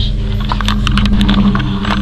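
Camera handling noise: a run of short rustles and clicks on the microphone as the handheld camera is moved, over a steady low hum.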